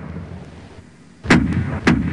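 Cannon salute sound effect: a low rumble, then two cannon shots about half a second apart, each dying away in a rolling boom.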